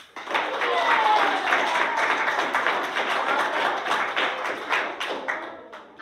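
A roomful of children clapping and cheering, starting suddenly and dying away after about five seconds.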